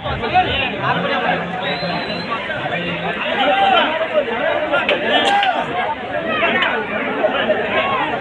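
Crowd chatter: many people talking over one another at once, no single voice standing out.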